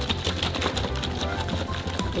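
Background music with a steady, repeating bass beat and quick clicking percussion.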